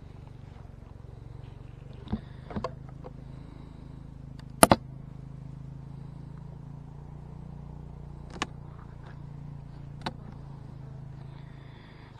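Steady low hum of a Carniolan honey bee colony in a winter hive, with several short knocks of the wooden hive cover and its metal top being handled and set back in place; the loudest, a sharp double knock, comes about halfway through.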